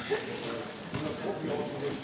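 Indistinct voices around a wrestling mat, with thuds of the wrestlers' feet and bodies on the mat; the loudest thud comes just after the start.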